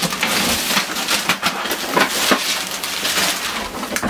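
Loose clear plastic packing bag crackling and rustling as a laser printer is shifted and turned on top of it, with many small crinkles throughout.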